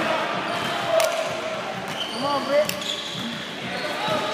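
A basketball bouncing on a court floor, with sharp knocks about a second in and again near three seconds, over the voices of players and spectators.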